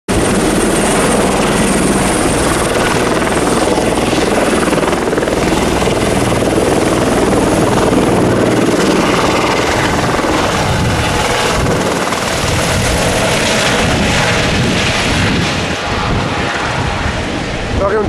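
Helicopters running at close range on a heliport: loud, steady turbine whine and rotor noise, easing off a little near the end.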